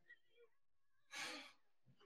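A woman's single soft sigh, a short breathy exhale about a second in, amid near silence.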